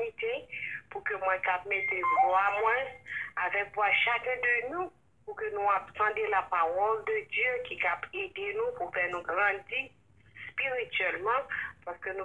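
A person speaking almost without pause, with two short breaks. The voice sounds thin and narrow, like speech heard over a telephone line.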